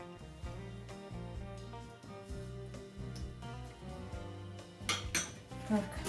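Soft instrumental background music with held notes. About five seconds in come two sharp clinks, a metal spoon against a small ceramic bowl.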